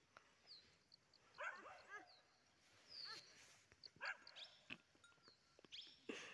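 Faint dog barking and yelping in short calls, several times over a few seconds.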